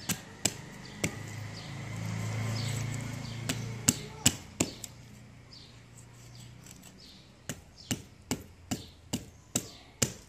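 Large kitchen knife chopping through a big fish into steaks and striking the wooden block beneath: three sharp chops, then four more in quick succession, then after a pause a steady run of seven chops about two and a half a second. A low hum swells and fades under the first half.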